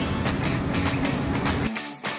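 Wire brush scrubbing rust and dirt off a steel wheel hub: a dense, rhythmic scraping that stops suddenly near the end, under background music with a steady beat.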